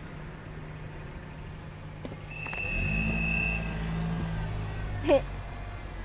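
A car engine running close by, a low hum that grows louder from about halfway in, with a brief high squeal-like tone just before it swells.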